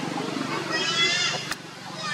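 Baby long-tailed macaque crying: one high-pitched, wavering squeal about half a second in, lasting roughly half a second. A sharp click follows, then a brief quieter stretch near the end.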